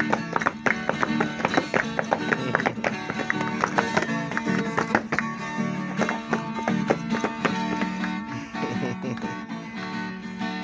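Viola caipira strummed and picked in a fast, steady rhythm: an instrumental passage between the sung verses of a moda de catira.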